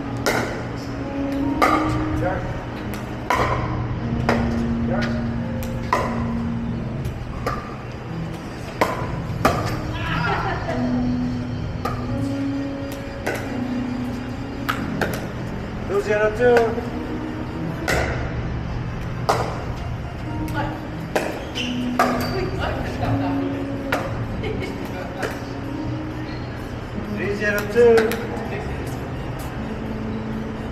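Pickleball rally: paddles striking the hard plastic ball, a string of sharp pops at irregular intervals of about a second, over background music with low held notes.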